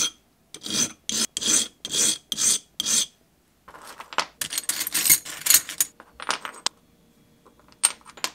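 A stained-glass edge filed on a carborundum stone: about six rasping strokes, roughly two a second, stopping about three seconds in. After a short pause, small pieces of glass clink and slide as they are set down and pushed about on the table.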